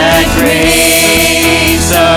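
Live worship band: several singers holding long notes together into microphones over guitar accompaniment, played loud through the sound system.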